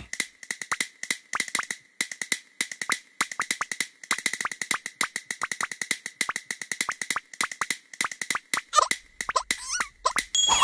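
A quick run of sharp percussive taps and clicks in uneven rhythmic clusters, several a second, over a faint steady high tone, with a short squeaky pitch glide near the end.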